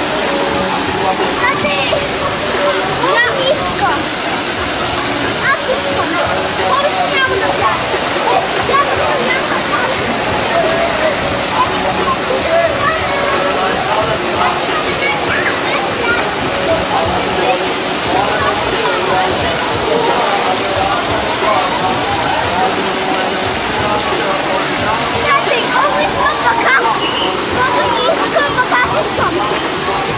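Steady rush of falling water with a constant babble of many people's voices and shouts over it.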